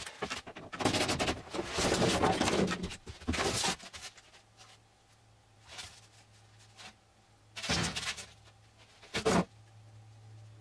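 Handling noises inside the van: about three seconds of rustling and scraping, then two short knocks near the end, over a faint low hum.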